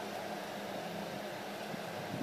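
Steady even hiss with a faint low hum underneath and no distinct events: background room noise of the kind a fan makes.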